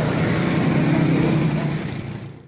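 Road traffic passing close by: motorcycle and tricycle engines running in a steady drone.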